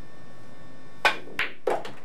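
Pool cue tip striking the cue ball for a low-English draw shot, followed by two more sharp clicks from the balls about a third of a second apart.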